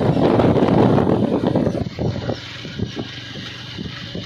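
Riding noise from a moving motorcycle: engine running under wind buffeting the microphone, loud at first and easing off about two seconds in.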